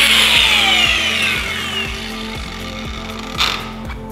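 Angle grinder winding down just after cutting threaded rod, its whine falling in pitch over about two seconds and fading out. Background music with a steady beat runs underneath, and there is a short rush of noise near the end.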